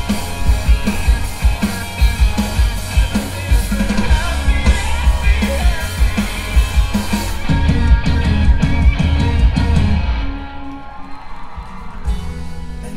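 Live rock band playing loud: drum kit, electric guitars and bass, with a lead singer singing. About ten seconds in, the drums and cymbals stop and the band falls back to quieter held notes.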